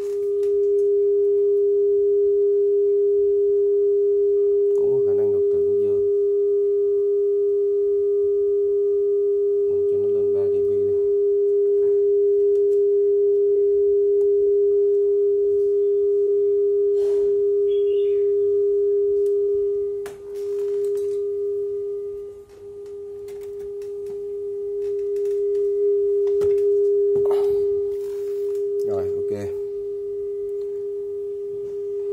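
A steady 400 Hz test tone from a Nakamichi ZX-7 cassette deck, used as the reference tone for checking level and azimuth. It is one pure pitch that holds constant and wavers briefly about two thirds of the way through.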